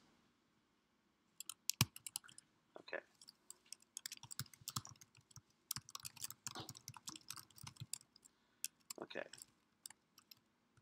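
Typing on a computer keyboard: a run of short, uneven key clicks that starts about a second and a half in and stops shortly before the end.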